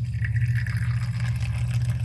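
Tea poured in a thin stream from a jug into a ceramic cup, a steady trickle as the cup fills. A steady low hum runs underneath and is the loudest thing.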